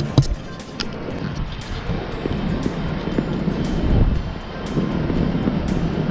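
Background music with a light, regular beat, over a low rumble of outdoor noise.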